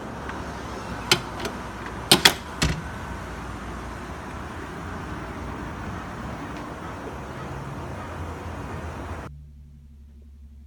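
Motel room door handle and latch working as the door is opened and shut: a sharp click about a second in, then a quick cluster of clicks and a knock around two seconds, over steady outdoor noise. Near the end the noise drops suddenly to a quiet low hum.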